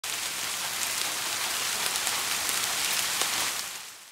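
Ambient soundscape of steady rain-like hiss with scattered faint crackles, fading out near the end.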